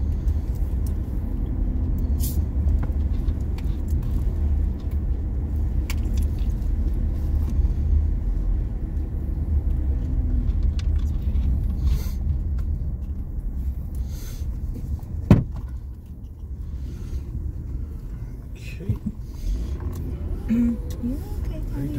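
Car driving on a paved road, heard from inside the cabin: a steady low rumble of tyres and engine. About fifteen seconds in there is a single sharp click, and after it the rumble is quieter.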